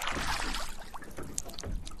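Water splashing and trickling around a rowboat as the oars pull through it, with a bigger splash at the start and smaller drips and gurgles after.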